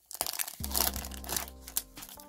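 Foil trading-card pack wrapper crinkling and tearing as it is pulled open by hand, in quick, irregular crackles. Quiet background music with held tones comes in underneath about half a second in.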